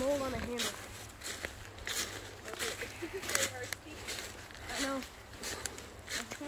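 Footsteps crunching through a thick layer of dry fallen leaves, an uneven step about every half second to second, with a few short vocal sounds in between.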